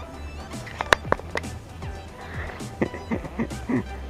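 Footsteps knocking on a steel-grating spiral staircase, with a few sharp metallic knocks about a second in.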